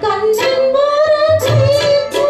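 A woman singing a Tamil film song, holding long notes that bend in pitch, over a backing of percussion strikes and low bass notes.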